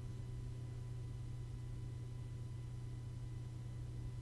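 Faint, steady low hum of a desktop computer's cooling fans, with a few thin steady tones above it and no other events.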